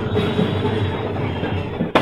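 Auto-rickshaw's small engine running with a steady rattling rumble, heard from inside its open cabin, with a sharp knock near the end.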